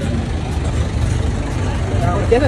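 Steady low rumble of motor vehicle noise on a street.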